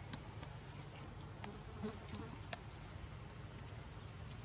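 A steady, high-pitched insect drone, with a few faint clicks near the middle.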